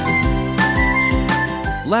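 Background music with a steady beat and a melody of held high notes.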